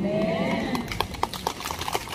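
A quick, irregular run of light clicks or knocks, with a faint trailing tone at the start, during a pause between amplified phrases.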